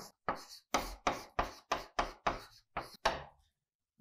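Chalk writing on a blackboard: about nine short, sharp taps and scrapes as a fraction line and letters are written. They stop about three seconds in.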